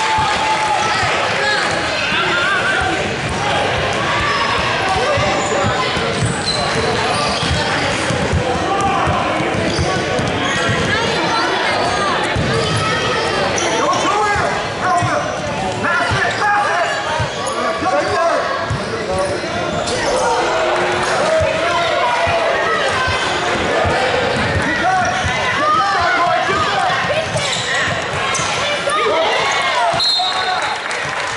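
Basketballs bouncing on a hardwood gym floor during a game, over a steady mix of many voices from players, coaches and spectators calling out in a large gym.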